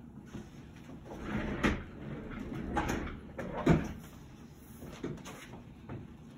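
Wooden clothes hangers knocking and garments rustling as clothes are handled on a hanging rack, with two sharp knocks about a second and a half and three and a half seconds in, the second the louder.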